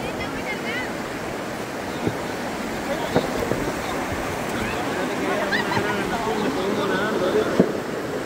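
River water rushing and splashing around people wading among stones, with voices calling in the background. Three sharp knocks cut through, the loudest near the end.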